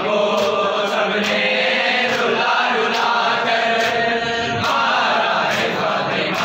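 A group of men chanting a noha in unison, with sharp chest-beating slaps of matam falling in a steady beat a little more than once a second.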